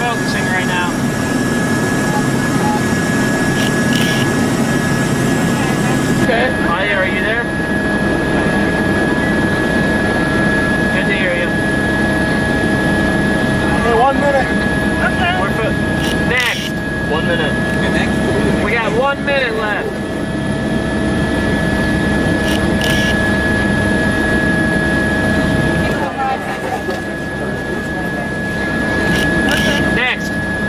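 Steady helicopter engine and rotor drone with a constant high whine, with voices talking over it now and then.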